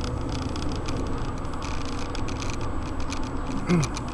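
Steady low rumble of a car's engine and tyres inside the cabin while driving, with scattered faint ticks. A short vocal sound comes near the end.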